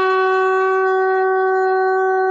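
A conch shell (shankha) blown in one long, steady note with a rich, bright tone, sounded for the lamp-lighting ritual.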